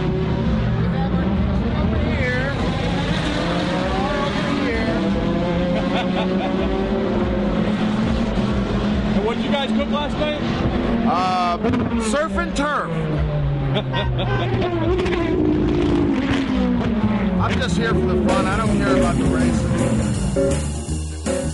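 Race car engines on the circuit, with cars passing and the engine pitch rising and then falling as each goes by, heard under people's voices.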